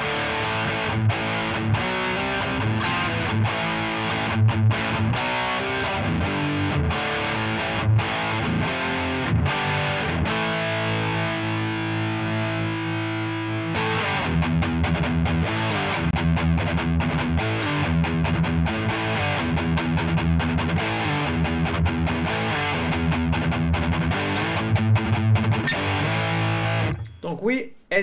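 Fret King Super Hybrid electric guitar played through a heavily distorted, metal-style high-gain sound: chugging low riffs, with a held chord ringing out around the middle before the riffing resumes. The playing stops about a second before the end.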